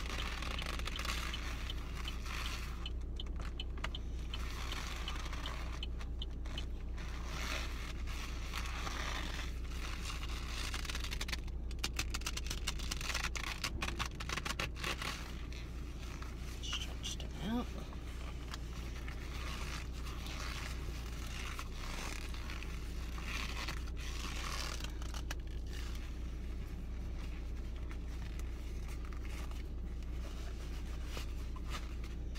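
Black leather gloves creaking, scraping and rubbing as they are pulled on and handled, with a flurry of fine crackles about halfway through. A steady low hum of the car runs underneath.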